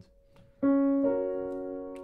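Piano played with the right hand alone: after a short pause, a chord is struck, followed about half a second later by a second chord in a shifted hand position, held and slowly fading.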